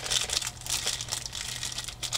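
Thin plastic sleeve crinkling as it is handled, a run of irregular rustles and small clicks.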